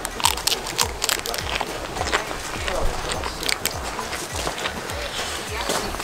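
Crisp pane carasau flatbread, folded around lard and liver, crunching and crackling irregularly as it is bitten and chewed close to the microphone.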